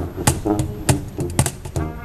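Brass-and-percussion street music: a cajon struck with sticks in quick, sharp clicks over the sousaphone's bass line, with the trumpet resting between phrases.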